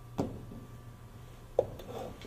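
Two knocks about a second and a half apart, the second sharper and louder, followed by faint rubbing: objects being handled on a hard surface, over a steady low hum.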